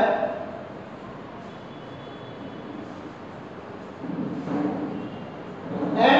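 Faint chalk writing on a blackboard over a steady background hiss.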